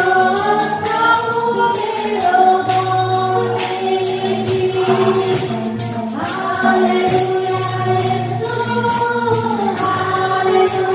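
Women singing a Nepali Christian worship song together in long held, gliding notes, over an accompaniment with a low bass and a steady, evenly spaced percussion beat.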